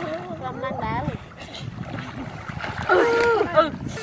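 People's voices talking and calling over a steady background noise, with one drawn-out call about three seconds in.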